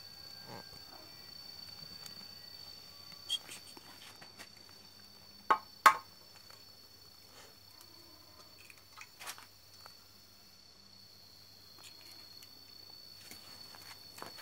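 An egg cracked against the rim of a dry frying pan: two sharp taps in quick succession about five and a half seconds in, then a few faint clicks as the egg goes into the pan.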